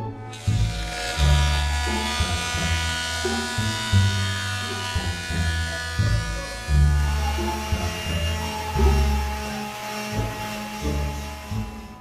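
Background music with a shifting bass line over the steady whine of a woodworking power tool's motor, a benchtop thickness planer running.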